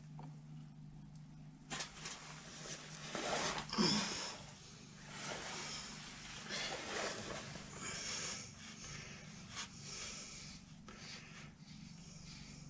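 Gear oil running from the opened drain hole of a tractor's rear-axle final drive into a plastic bucket, as a fluctuating trickle. There are handling noises in the first few seconds and a low steady hum underneath.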